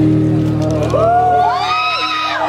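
Performance music holding a steady note. About a second in, audience whoops and cheering rise over it.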